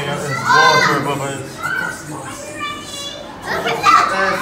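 Young children's high-pitched voices calling out and chattering, with no clear words.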